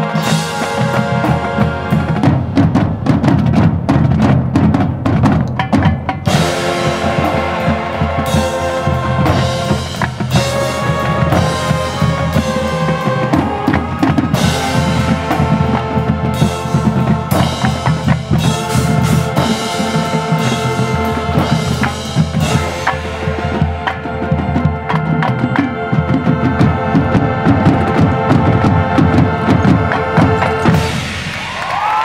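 High school marching band playing full out: a drum line of snares and bass drums drives the first few seconds, then the brass comes in holding chords over the drums.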